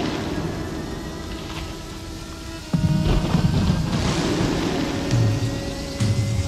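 Intro of a hard electro track: held synth tones over a noisy wash. About three seconds in, the level and the low end jump up suddenly, and swelling noise sweeps follow.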